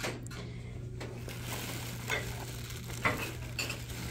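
Rustling and a few light knocks from household items and a plastic bag being handled on a store shelf, over a steady low hum. A hissy rustle sets in about a second in, with short clicks near the two-, three- and three-and-a-half-second marks.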